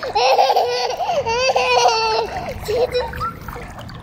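A toddler's high voice singing wordlessly in long, wavering notes for about two seconds, then a few shorter sounds, with light splashing as her hands move through the pool water.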